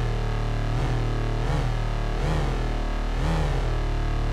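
Lightsaber-style hum from a Novation Peak synthesizer: low sawtooth oscillators, slightly detuned, drone steadily while a mod wheel sweeps their pitch up and back down about three times, like a saber being swung.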